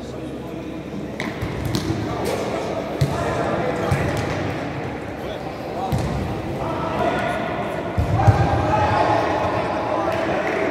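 Futsal ball being kicked and passed on an indoor court: several irregular brief thuds, the loudest near the end, echoing in a large sports hall over players' shouts and spectators' talk.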